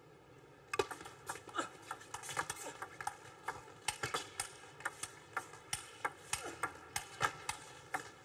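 Table tennis rally: the celluloid ball clicking sharply off the bats and the table, about three times a second, starting with the serve just under a second in.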